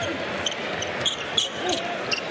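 A basketball being dribbled on a hardwood court over a steady arena crowd murmur, with a few short high squeaks of players' sneakers.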